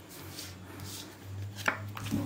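Quiet handling of playing cards on a tabletop: a faint rustle of cards sliding, then one sharp click near the end.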